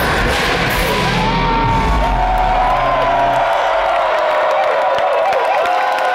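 Live metal band playing the final bars of a song, the bass and drums dropping out about three and a half seconds in, with the crowd cheering and whooping through it.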